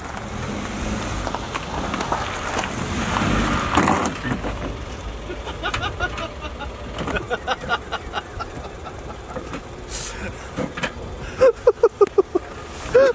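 A Hyundai i10 hatchback driving on a gravel lot: a rush of engine and tyre noise builds over the first few seconds. Short bursts of voices follow, louder near the end.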